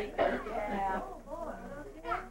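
Indistinct voices talking, with what sounds like a throat clearing among them.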